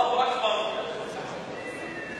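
Speech only: a man lecturing in Arabic.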